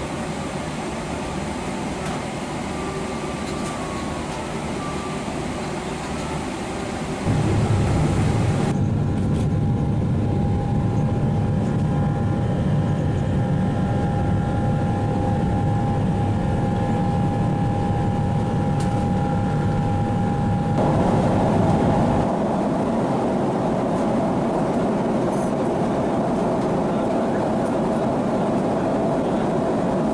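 Jet airliner cabin noise aboard a Boeing 777-300ER: a steady rush that jumps about seven seconds in to a much louder, deeper rumble from the GE90 engines during the climb-out, with a steady whine over it. The deep rumble eases back about twenty-two seconds in.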